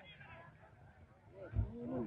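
Faint outdoor background for about a second and a half, then a low thump and a man's voice calling out near the end.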